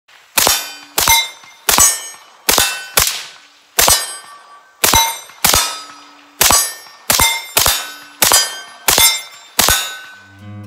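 Rifle fired in a steady string of about fourteen shots, roughly one every half second to a second. Each shot is followed by the ring of a hit steel target, the pitch changing from plate to plate.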